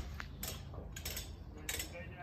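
A few faint, sharp clicks and light clinks, scattered irregularly over low background noise.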